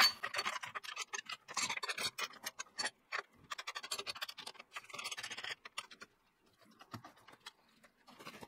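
Quick small clicks and scrapes of the metal bandsaw jig's clamping jaws and threaded rods being adjusted against a cherry burl, the wood rubbing on the steel bracket. The clicking stops about six seconds in, and a single knock follows near seven seconds.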